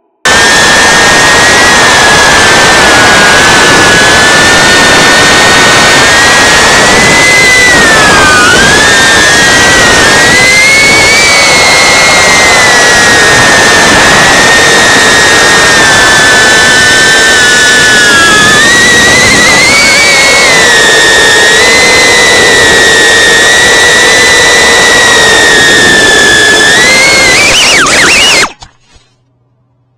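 Tiny FPV whoop drone's motors and propellers whining loudly: several close high tones that rise and fall together with the throttle, with a quick surge near the end.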